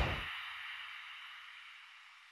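The fading tail of a whoosh transition sound effect: a hiss dying away steadily to almost nothing.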